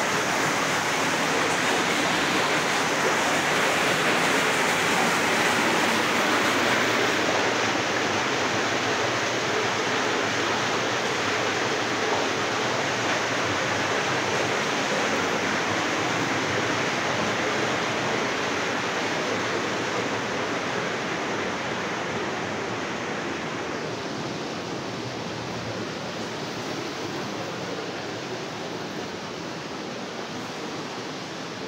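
Rushing water of a stream or small waterfall, a steady hiss that slowly fades over the second half.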